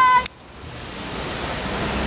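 City street background noise, with traffic and crowd blended into an even rush. It opens with the end of a high, steady held tone that cuts off suddenly, then drops away and builds back up over about a second.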